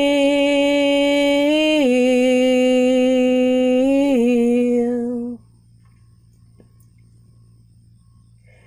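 A woman's unaccompanied solo voice holding one long sung note on the word "feel", stepping down in pitch twice and stopping about five seconds in, followed by quiet room noise.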